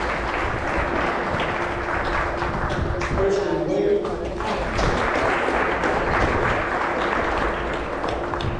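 An audience applauding steadily, with voices underneath.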